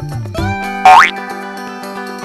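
Upbeat background music for a children's video with held instrumental notes. Just under a second in comes a short sound effect that glides quickly upward in pitch, the loudest moment.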